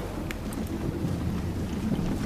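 Steady low rumble of wind buffeting the microphone outdoors, with a few faint clicks.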